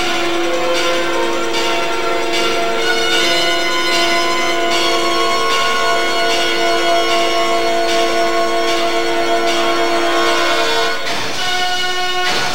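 Recorded show music played over a sound system: one long held chord of steady tones lasting about eleven seconds, breaking into new notes near the end.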